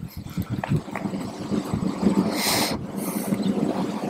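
Golf club swishing through the turf on a short chip shot: a brief hiss-like swish a little past halfway, then a fainter one, over a steady low rumble.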